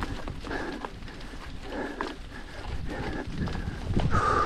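A road bicycle riding over wet cobblestones: a dense, irregular clatter of knocks and rattles as the bike and camera are shaken by the stones.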